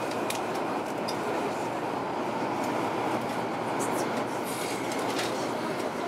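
Steady running noise of a Taiwan High Speed Rail 700T train, heard from inside a passenger car, with a few faint clicks over it.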